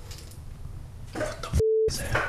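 A short editing bleep, one steady beep of about a quarter second near the end, laid over a spoken word to censor it just after a voice starts speaking. Before it there is only faint room sound.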